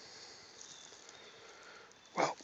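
Near silence: faint, steady outdoor background with no distinct sound.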